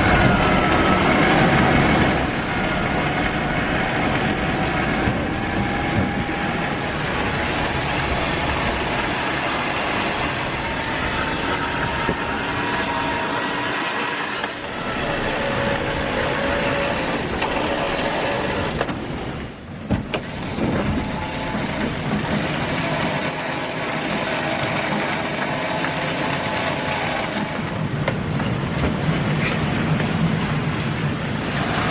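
Steady wind and sea noise aboard a sailing catamaran in strong wind, with thin whining tones that drift in pitch over it. The sound dips briefly a little past the middle.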